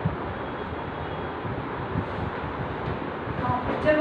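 Steady, fairly loud background noise, an even hum and hiss, with a couple of faint soft knocks near the start and about two seconds in.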